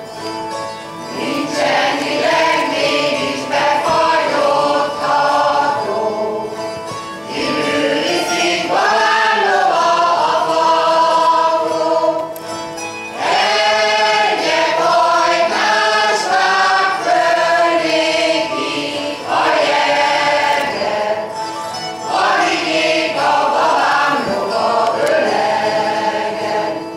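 Hungarian folk song sung together by a folk choir of women and men, with a citera (Hungarian zither) accompanying. The singing comes in phrases of about five or six seconds, with short breaks between them.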